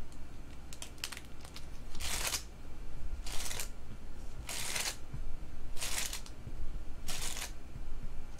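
Foil-wrapped trading-card packs being slid off a stack and dealt out one at a time: a short crinkly swish about every second and a quarter, five times, after a few faint clicks.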